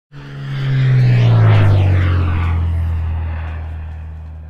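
An aircraft flying past: its engine tone swells to its loudest about a second and a half in, drops in pitch as it passes, and then fades away.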